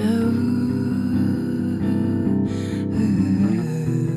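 A live band song: guitar chords ringing under a held, wordless singing voice that slides down and back up in pitch about three seconds in.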